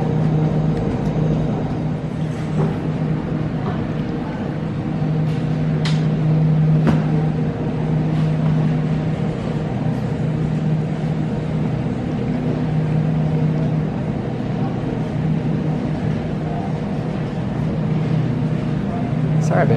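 Steady low mechanical hum of a supermarket's refrigerated display cases and store machinery, with a few faint clicks.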